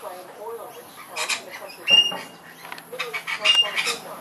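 Rainbow lorikeets screeching: short, harsh calls about one second in, a louder one about two seconds in, and a cluster near the end, some with a thin high whistle in them.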